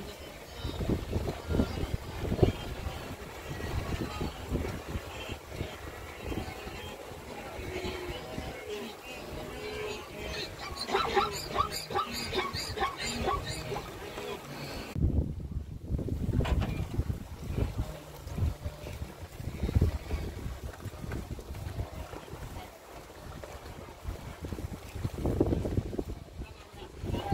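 A large herd of wildebeest running and plunging into a river: hooves thudding, water splashing and animal calls, over steady herd noise, with wind gusting on the microphone.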